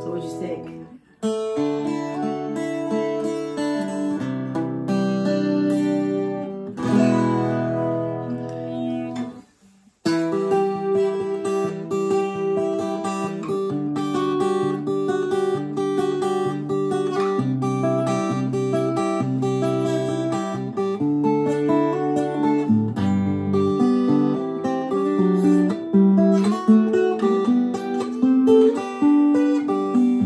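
Taylor 652ce Builder's Edition 12-string, 12-fret acoustic guitar being played. Sustained chords stop briefly about a second in and again near ten seconds in, followed by a continuous passage of quicker, shorter notes.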